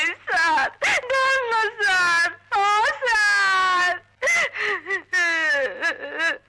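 A woman crying and pleading in a high, wailing voice, in a run of short sobbing cries broken by brief pauses.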